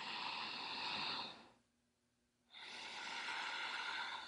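A woman's strong breathing through the nose, in a paced breathwork exercise. A long inhale until about a second and a half in is followed by a pause of about a second, then a long exhale, each a steady rush of air.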